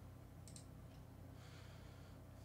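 Near silence with a low steady hum, broken by a faint sharp click about half a second in and a softer tick just after.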